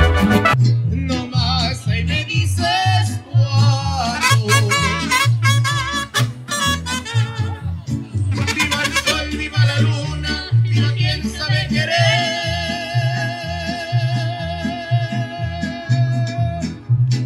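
Mariachi band playing and singing: a deep guitarrón bass line in a steady rhythm under violins and a wavering voice, with one long held note about twelve seconds in.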